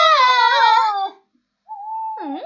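A child's long, high scream, "Aagh!", held steady and then falling away about a second in. A shorter cry starts near the end.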